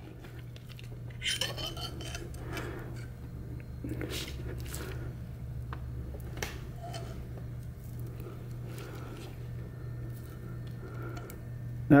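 Faint, scattered light metallic clinks and handling sounds as a Muncie 4-speed countergear and its loose steel needle bearings are moved about by gloved hands on a paper towel, over a steady low hum.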